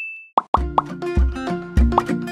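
Editing sound effects under a title card: a ringing ding fades out and a short plop sounds. Then background music with a steady beat starts about half a second in.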